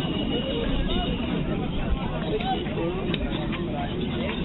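Background chatter of several people's voices overlapping, with no one clear talker, over a steady low rumble.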